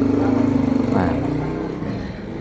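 An engine running at a steady pitch, growing quieter through the second half, under a man's brief spoken "Nah".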